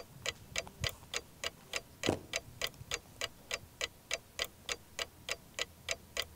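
Quiz-show countdown clock ticking evenly, about three ticks a second, while the team's answer time runs.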